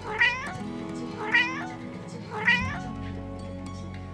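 Abyssinian cat meowing three times, each call about half a second long and wavering in pitch, about a second apart, over background music.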